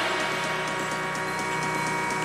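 Techno music in a stripped-down breakdown: a fast repeating figure with light ticking on top and no kick drum.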